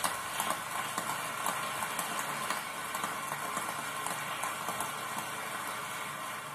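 Large audience applauding steadily, many hands clapping at once.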